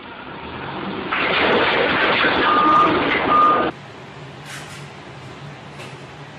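Forklift running loudly, with two short reversing-alarm beeps over the machine noise. About four seconds in the sound cuts off abruptly, leaving a low steady hum.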